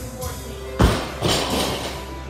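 A loaded barbell dropped from hip height onto the gym floor after a deadlift, landing with a heavy thud about a second in and a second, smaller knock just after.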